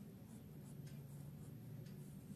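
Ballpoint pen writing by hand on notebook paper: a few faint, short pen strokes.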